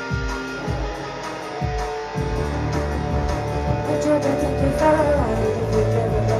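A live band playing a song. A low beat thumps about twice a second, then about two seconds in the bass and guitar come in fuller.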